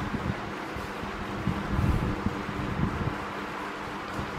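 Steady background hiss with a faint low hum, broken by a few soft, low thuds.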